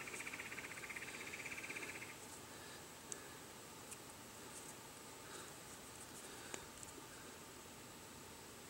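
Faint quiet with a high, rapidly pulsing trill for the first two seconds, then a few faint small clicks and rustles from hands working wet sinew around a wooden arrow shaft.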